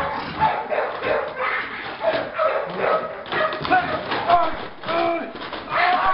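German Shepherd giving short, high yelping barks, each rising and falling in pitch, repeating about every half second to second from about two seconds in, over rustling and knocking of sacks and containers being moved.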